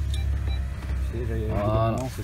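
A low, steady hum inside a parked car's cabin, with a man's voice speaking briefly in the second half.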